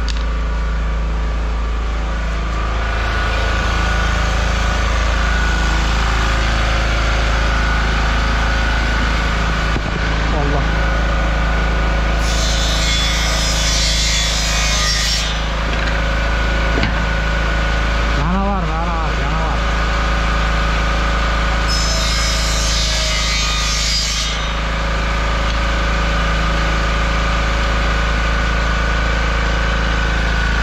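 Small portable engine generator running steadily. Two bursts of a power saw cutting laminate flooring stand out over it, about twelve and twenty-two seconds in, each a few seconds long.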